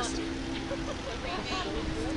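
Faint voices over outdoor background noise, with a steady low hum running underneath.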